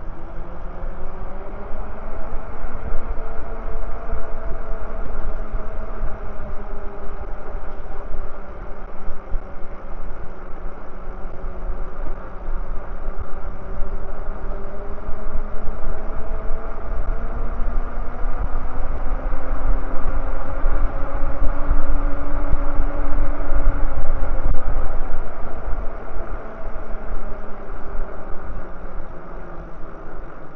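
Motorized bike's motor running while riding, a steady drone whose pitch slowly rises and falls with speed, over heavy wind rumble on the microphone. It is loudest about 20 to 25 seconds in.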